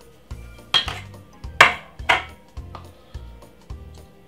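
Metal kitchenware clinking and clattering as a sieve and cake tin are handled: a handful of sharp knocks, the loudest near the middle. Background music with a steady low beat runs underneath.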